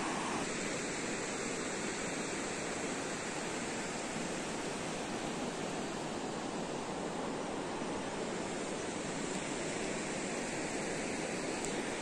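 Steady, even rushing noise of a river flowing below.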